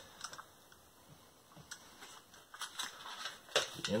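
Plastic cassette tape case being handled and opened: scattered light clicks, with more of them near the end.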